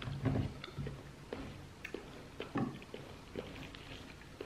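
A person chewing a juicy bite of fresh pineapple with mouth closed: faint, irregular soft wet clicks and squelches.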